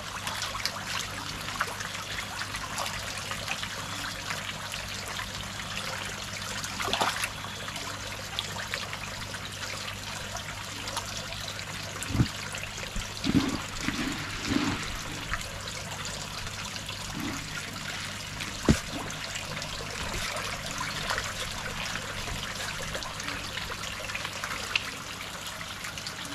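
Steady trickle of water running into a fish pond over a low steady hum, with a few short splashes or knocks about halfway through and one more a little later.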